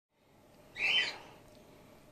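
A grey-headed flying-fox pup gives a single short, high call about a second in.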